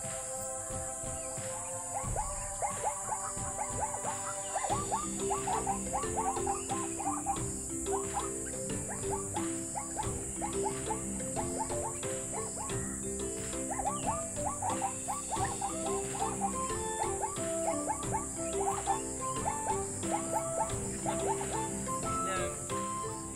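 Background music: held tones at first, then a rhythmic melody of short notes from about five seconds in, over a steady high hiss.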